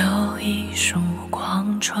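Mandarin pop ballad: a male vocalist sings a soft, breathy line with crisp 's' and 'ch' consonants over a gentle accompaniment with a held low bass note.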